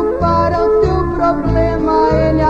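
Brazilian gospel song: a woman sings over a backing band, with a bass note repeating on each beat.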